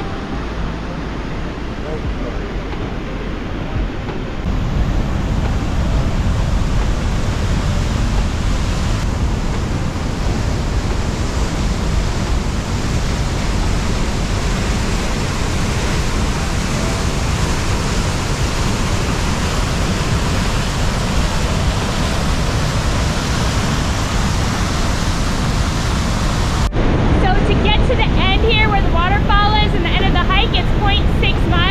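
Whitewater of Tokumm Creek rushing through a narrow limestone canyon: a steady rush of water that grows louder about four seconds in.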